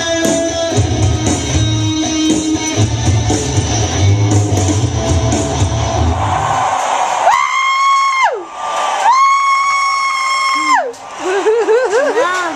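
Guitar-driven rock music with a steady low rhythmic pulse, which stops about seven seconds in. Then a child's voice holds two long, high, steady notes, each sliding down at the end.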